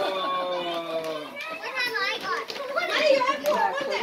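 Children's excited voices and chatter. A long, slightly falling drawn-out voice fills the first second or so, then quick, bright children's exclamations follow.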